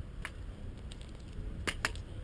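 A few sharp clicks, one early and two in quick succession near the end, over a steady low rumble.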